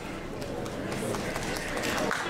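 Audience applauding, the clapping growing slowly louder.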